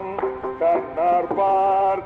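Carnatic classical vocal music in ragamalika: a male singer holding and bending long notes, with accompaniment.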